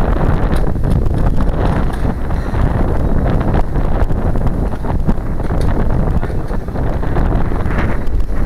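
Wind blowing across the camera's microphone: a loud, steady rumble without letup.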